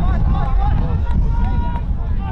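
Distant voices of players and onlookers shouting across an Australian rules football ground, with one call held for about half a second a little after the first second. Under it is a heavy low rumble of wind on the microphone.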